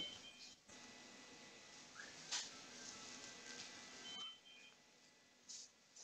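Near silence: faint room tone, with a few brief faint beeps and a soft tap.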